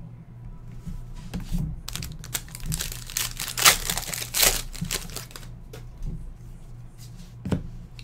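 Foil wrapper of a trading-card pack crinkling and tearing as it is ripped open by hand, a burst of crackling for a few seconds in the middle, over a steady low hum.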